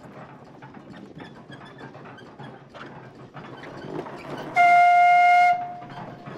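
Steam whistle on a 1908 Dolbeer steam donkey blowing one short blast near the end, a single steady note held for about a second, preceded by faint clicks.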